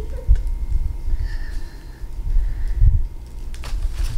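Low bumps and rumble of hands working on a tabletop while fluffy fiberfill packing is pulled away from a potted plant, with two stronger thumps, one just after the start and one near the end.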